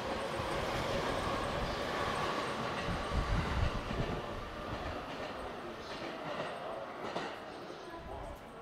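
A JR E231 series 500 commuter train pulling out of the platform and accelerating away. Its traction motors give a steady whine over the rolling noise, and the wheels thump over rail joints about three seconds in. The sound fades as the train recedes.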